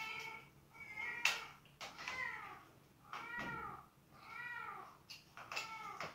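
A series of about six short meows, about a second apart, each rising then falling in pitch.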